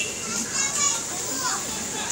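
Indistinct voices, some of them high-pitched children's voices.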